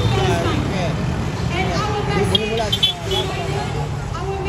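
Indistinct voices over the steady low rumble of passing road traffic, cars and motorcycles.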